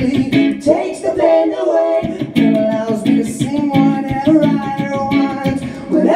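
Electric guitar strummed while a man sings into a microphone, his voice run through a vocal effects pedal that adds harmony parts.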